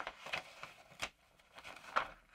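Faint rustling of paper as a folded letter is opened out and its sheets handled, with a few short, crisp crackles of the paper.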